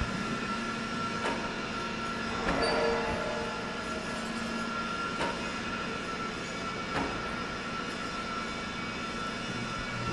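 Steady drone of steel-shop machinery with a constant high whine and a low hum, broken by a few sharp metallic knocks.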